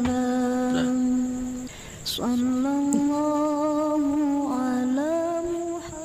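A voice humming in long, steady held notes: one note held for nearly two seconds, a short break, then another long note that steps up in pitch about five seconds in.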